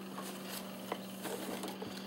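Faint rustling and a few light clicks from handling a hard plastic pistol case and its papers as the lid is closed, over a faint steady hum.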